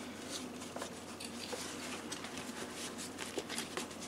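Faint handling noise of a canvas bag being pulled down over a rebreather's metal canister: soft fabric rustling with a few light clicks.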